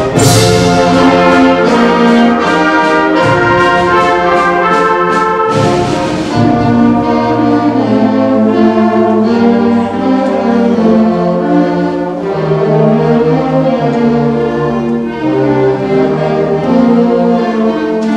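School concert band playing a loud, brass-led fanfare passage, with crashes at the start and about six seconds in and regular sharp strokes between them. After that the band settles into a smoother, sustained legato passage.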